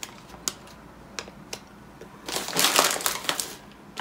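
Plastic bag of dried kidney beans crinkling loudly for about a second as it is picked up and handled, beginning about two seconds in. A few light clicks come before it.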